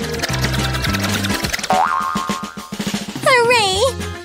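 Background music with a drum-roll sound effect, a run of rapid strokes that crowd closer together as the prize wheel spins. A rising cartoon boing comes about two seconds in, and a voice comes in near the end.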